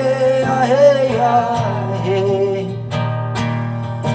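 Live acoustic guitar accompanying a woman's wordless sung melody, over steady sustained low tones.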